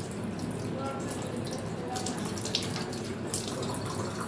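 Tap water running steadily into a ceramic washbasin and splashing as a forearm is rinsed and rubbed under the stream, with a few sharper splashes midway.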